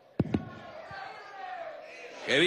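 Two loud thumps in quick succession near the start, followed by faint voices from a crowd in a large hall.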